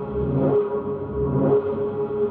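Ambient film-score drone holding a steady tone, with two deep rumbling swells about a second apart rising under it.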